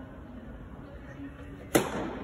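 A tennis racket strikes the ball once on a serve, about three-quarters of the way through: a single sharp pop with a short echo from the indoor hall.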